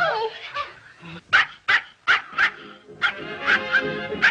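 A dog giving four short, sharp yelps in quick succession, followed by orchestral music coming in about three seconds in.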